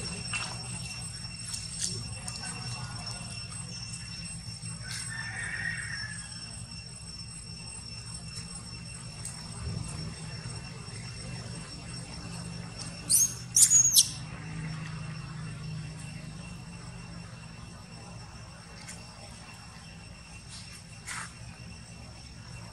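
A young long-tailed macaque gives two or three short, shrill squeals about two-thirds of the way in while grappling with another monkey. These are the distress screams of a monkey being bitten. A faint, steady high-pitched drone carries on underneath.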